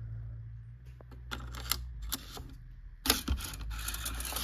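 A strip of 1-inch 18-gauge brad nails being handled and loaded into the magazine of a Craftsman cordless brad nailer: a few light plastic-and-metal clicks, then a sharper cluster of clicks just after three seconds in.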